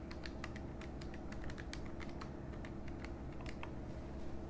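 Calculator buttons being pressed in quick, irregular clicks as a calculation is keyed in, over a steady low hum.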